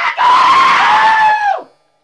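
A man screaming one long, loud yell lasting about a second and a half, its pitch dipping slightly before it falls away and cuts off.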